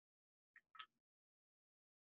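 Near silence on a gated call line, with two faint, very short sounds a little over half a second in.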